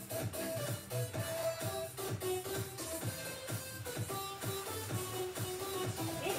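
Background music with a steady beat and held melody notes.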